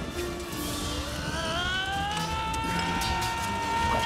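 Film soundtrack music from the movie: a single sustained note that slides upward, then holds steady and cuts off abruptly.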